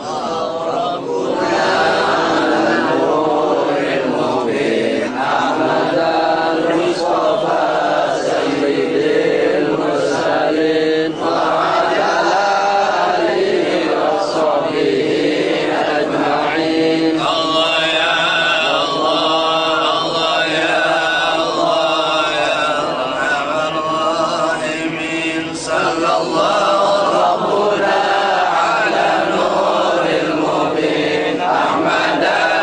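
Men's voices chanting a mawlid recitation in Arabic together, a continuous melodic chant with only a short break about eleven seconds in.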